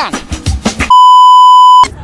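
A censor bleep: one steady, high, pure beep lasting about a second that starts and stops abruptly, laid over the soundtrack to cover words. Before it there is a brief stretch of voice and music.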